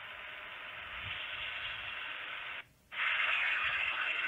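Radio-style static hiss from a TV spirit box app playing through a smartphone's speaker. It cuts out for a moment about two and a half seconds in, then comes back louder.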